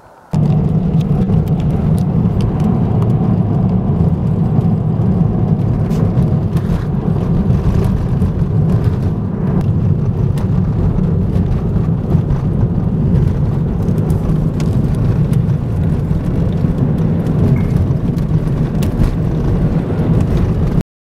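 Car cabin noise while driving on a snow-covered road: a loud, steady low rumble of tyres and engine that starts abruptly just after the beginning.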